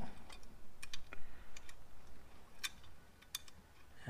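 Light, scattered clicks and ticks of wires and small metal parts being handled as the wires are fed back through the plasma cutter's front-panel connector hole, with two sharper clicks near the end.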